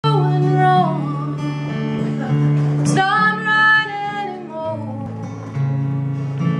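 Live acoustic band music: acoustic guitar strumming, with a gliding, wavering melody line over it.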